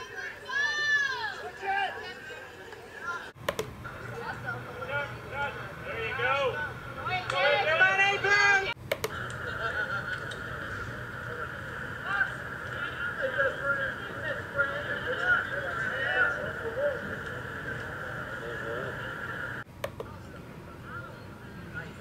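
Voices from the sidelines of soccer games, with shouts and a steady hubbub of overlapping voices, broken by abrupt cuts between clips three times.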